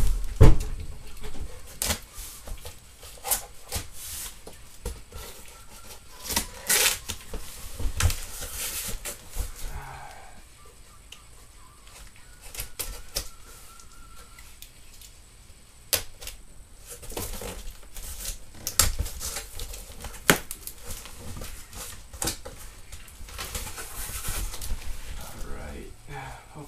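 A large cardboard box being handled and opened: repeated knocks and thumps on the cardboard, the loudest about half a second in, with short stretches of scraping and tearing as tape and flaps are worked loose.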